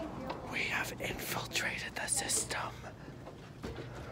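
A person whispering for about two seconds, starting shortly after the beginning and trailing off before the end.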